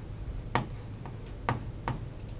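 Pen writing on an interactive whiteboard screen: faint scratching with three light taps, about half a second, a second and a half, and nearly two seconds in.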